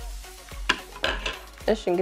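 A metal spoon stirring a thick, creamy mixture in a plastic bowl, with several light clicks and scrapes of the spoon against the bowl.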